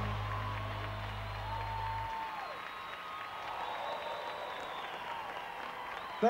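Audience applauding and cheering as a song ends. The band's final held low note cuts off about two seconds in, and the applause carries on.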